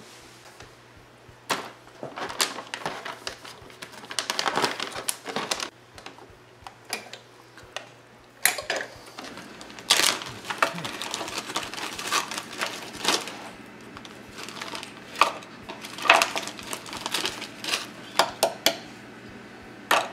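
Plastic zip-top bag crinkling and rustling as it is handled, with irregular sharp crackles and clicks coming in clusters.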